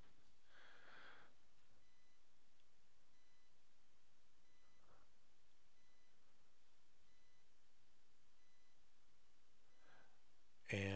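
Near silence: quiet room tone with a faint, thin, high beep repeating about every second and a quarter.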